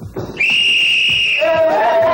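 A single high, steady whistle blast lasting about a second, like a coach's or referee's whistle sending the players out. It is followed by players shouting.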